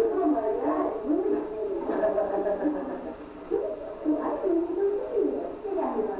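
Indistinct voices of people talking, muffled and thin, as on an old low-fidelity recording with no bass.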